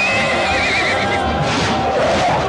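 A horse whinnying: one high, wavering call lasting about a second and dropping slightly in pitch at the end, over music.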